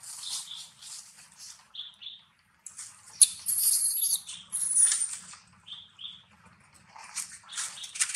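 Newborn long-tailed macaque squealing in short, high-pitched cries, loudest in two long cries a little past the middle, over the rustle of dry leaves under the monkeys.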